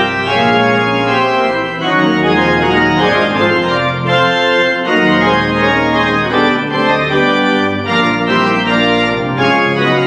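Church organ playing full sustained chords on the manuals, with a pedal bass line that moves to a new note about every second.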